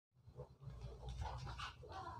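Faint breathing and rustling of a person moving and settling into a seat at a table, over a low steady hum.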